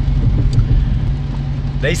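Steady low rumble of a car, heard from inside the cabin. A man's voice starts just before the end.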